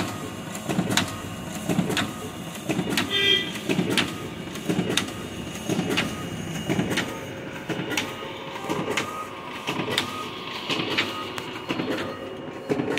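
Ricoh DX 2430 digital duplicator (drum-type stencil printer) running a print job, feeding and printing cards one after another: a steady machine run with a rhythmic clatter as each sheet goes through, roughly once a second.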